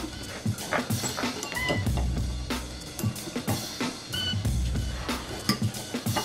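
Background music with a steady drum-kit beat of kick and snare over a bass line.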